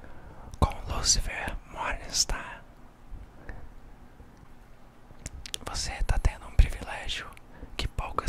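A man whispering close into the microphone, ASMR style, in two spells about a second in and again from about five and a half seconds, with low thumps of breath on the mic.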